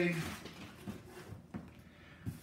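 Faint handling noise of packing paper and cardboard being moved about on a table, with a few light knocks and ticks.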